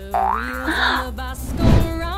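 Cartoon sound effects over children's background music: a rising springy boing right at the start, a short hiss about halfway, and a low thud just before the end.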